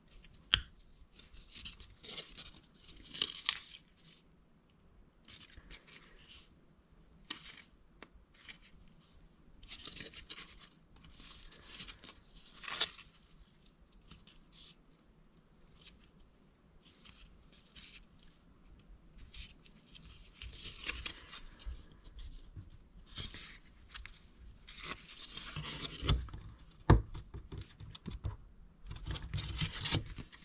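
Laser-cut plywood model-kit parts being handled and fitted together by hand: intermittent dry scraping and rubbing of wood on wood, with a few sharp clicks.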